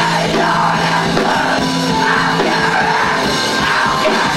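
Rock band playing live: electric bass, electric guitar, keyboard and drum kit together at full volume, with long held low notes under the band.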